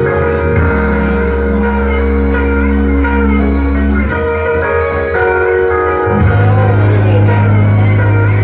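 Electric keyboard music: sustained chords over long held bass notes, with the chord changing about a second in, again about four seconds in and about six seconds in.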